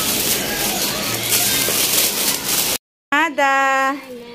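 A thin plastic shopping bag rustles and crinkles as it is handled and pulled open. After a sudden cut, a voice holds one steady note for under a second near the end.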